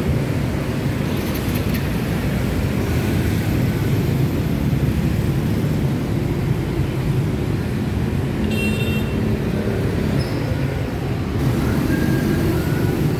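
Steady city street traffic, mostly motorbike and scooter engines running and passing. A brief high-pitched tone sounds a little past two-thirds of the way through.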